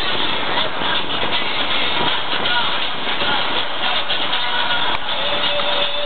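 Boat motor running steadily, with people's voices chattering over it.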